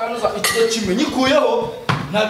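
Metal weight plates clinking and clanking against each other and the bar as they are handled, with one sharp knock near the end.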